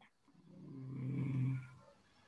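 A person's voice making one drawn-out, steady-pitched hum or "uhh", swelling and then fading over about a second and a half.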